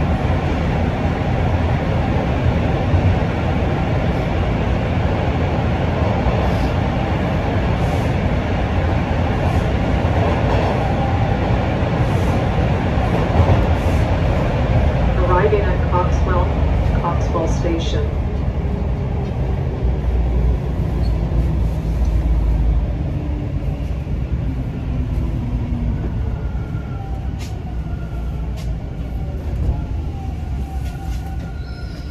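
TTC Line 2 subway train heard from inside the car, running with a steady loud rumble, then slowing into a station. Near the middle a few short sharp squeaks sound, then a whine falls steadily in pitch and the rumble dies down as the train brakes.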